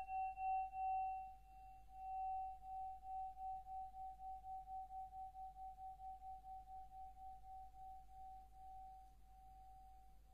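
A bell-like metallic ringing tone dying away: one steady mid-pitched note that wobbles in loudness as it fades, its higher overtones gone after about a second.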